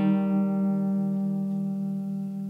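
A single instrumental chord, struck just before, rings on and slowly fades, its higher notes dying away first.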